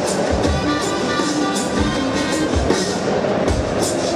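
A DJ's electronic remix playing loudly, with deep bass-drum hits and quick hi-hat-like ticks over sampled pitched instruments.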